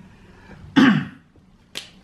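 A man clears his throat once: a short rasping burst with falling pitch. A single sharp click follows near the end.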